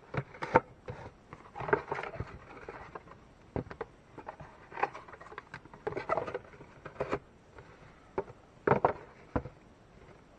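Paper and cardboard being handled: leaflets and a paper card rustling as they are taken out of cardboard reel boxes, with the boxes knocking and scraping on the tabletop. The sounds come in short, irregular spells of rustling and sharp knocks.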